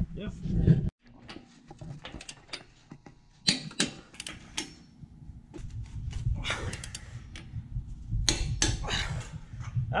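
Ratchet torque wrench tightening an anchor bolt nut on a car lift's steel base plate: scattered sharp clicks and metal knocks in short clusters over a low rumble, the last near the end as the nut comes tight. Before that, a loud low rumble cuts off abruptly about a second in.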